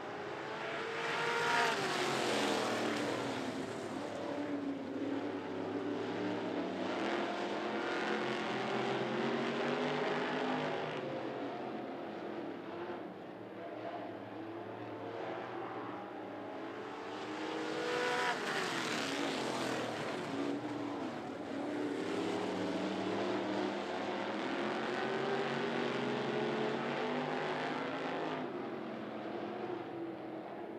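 Street stock race cars' V8 engines running as a line of cars passes on a dirt oval, the engine pitch rising and falling. The cars are loudest going by about two seconds in and again at about eighteen seconds.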